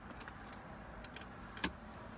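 Faint background hiss with a few light clicks and one sharper click near the end, from a hand handling the plastic centre-console cup holder and storage bin.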